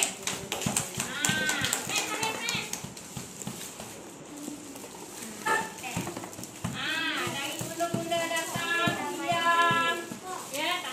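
Hand clapping mixed with high-pitched children's voices. The clapping is thickest in the first three seconds, and the voices carry on through.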